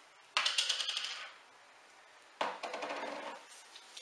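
Two bursts of rapid, clattering rattle, each about a second long: one about a third of a second in, the other about two and a half seconds in.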